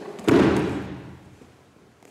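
One heavy thud as a judo student's body lands on a foam judo mat after a hip throw, ringing out in the hall's echo over about a second.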